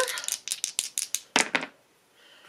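Two dice shaken together in a hand with a quick run of clicks, then rolled into a fabric-lined dice tray. The clicking stops about a second and a half in.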